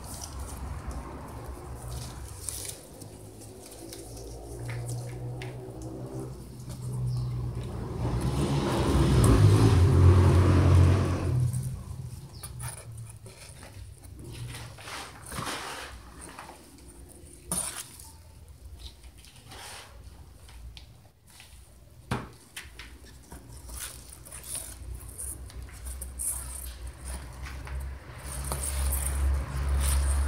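Small clicks, knocks and rustles of hands working a cymbidium orchid into a plastic pot and pressing potting mix around its roots. A louder rushing sound with a low rumble swells and fades between about eight and eleven seconds in.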